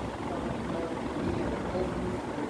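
Indistinct voices of people talking in the room over a steady low rumble.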